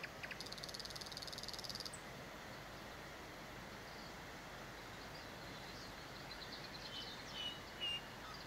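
Faint outdoor nature ambience: a steady soft hiss, with a high, rapidly pulsing trill lasting about a second and a half starting about half a second in. A few short high chirps come near the end.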